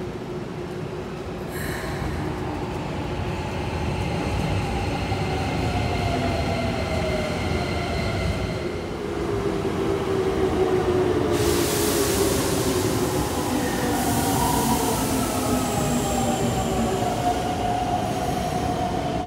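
Electric commuter trains moving along a station platform: a steady rumble under motor whine in several tones that slide in pitch. The sound grows louder as a red train pulls in, its whine falling as it slows, and a loud hiss joins about eleven seconds in.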